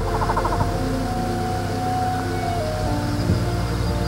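A stripe-backed bittern's calls set under steady ambient background music. A quick rapid run of notes comes right at the start.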